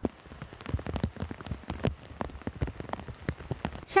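Rain falling steadily, with many irregular single drops striking close by.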